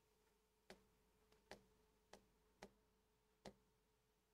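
Near silence broken by five faint, short clicks, irregularly spaced about half a second to a second apart, over a faint steady hum: clicking through presentation slides.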